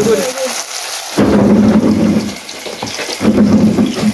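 Battered pieces of shark meat deep-frying in a pot of hot oil: a steady crackling sizzle. Two loud low rumbles come over it, one about a second in and one past the three-second mark.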